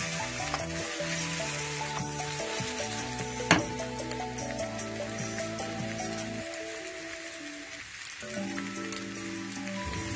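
Diced potatoes and onions frying in oil in a non-stick wok, sizzling steadily, with one sharp click about three and a half seconds in.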